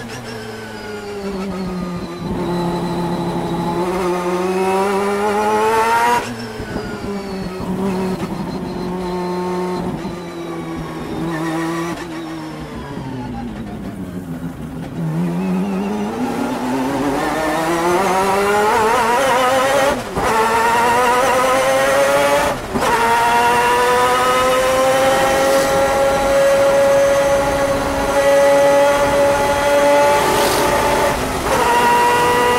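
A 600 hp four-rotor Wankel rotary engine in a 1991 Mazda RX-7 GTO race car, heard from inside the cockpit on track. Its pitch falls through the first half to a low point about halfway as the car slows, then climbs steadily through the second half under acceleration, with a few brief sharp breaks along the way.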